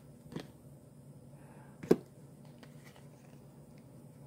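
Faint handling of trading cards, a few light ticks and rustles as the cards are shuffled between the hands, with one sharp click a little under two seconds in.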